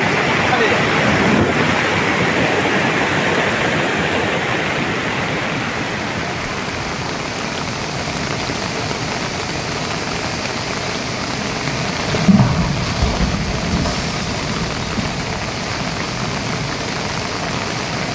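Steady rushing noise of a flood-swollen river running high and fast, mixed with heavy rain.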